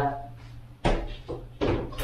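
A few hard knocks and clunks, spaced under a second apart, as a motorized roller shade's headrail is pushed up against the top of the window frame and into its mounting brackets.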